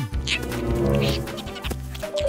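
Background children's music with a pitched, animal-like cartoon call laid over it.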